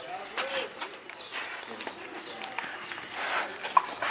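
Birds calling, with a short cooing call about half a second in, scattered light clicks, and one brief sharp chirp near the end.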